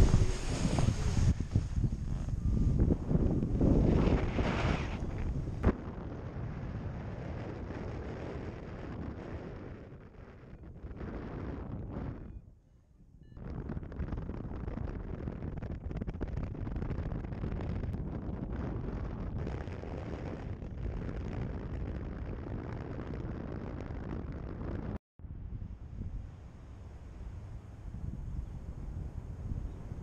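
Wind rushing over a paraglider pilot's camera microphone in flight. It is loudest and gustiest for the first few seconds, then settles into a steadier rush, which fades briefly near the middle and cuts out sharply for a moment near the end.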